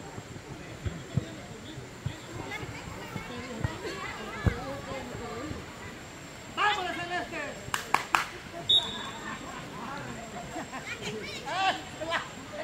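Players' and spectators' voices calling out across a football pitch, with a few dull thumps of a football being kicked, the loudest about halfway through. A burst of shouting comes a little past halfway and again near the end.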